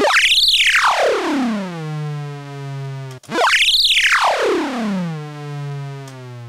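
Moog Matriarch synthesizer triggered twice, about three seconds apart, with its pitch and volume driven by an ADSR envelope reshaped in a Klavis Flexshaper. Each note shoots up to a high squeal, then glides down in a long falling sweep and settles into a low, steady buzzing tone.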